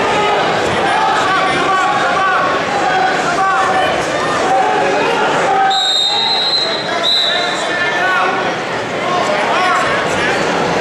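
Voices of spectators and coaches shouting and talking over each other in a gymnasium. A high steady tone sounds for about a second around the middle, then again briefly just after.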